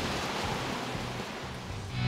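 Steady outdoor background noise, an even hiss with no distinct events, as the scene fades out; music starts right at the very end.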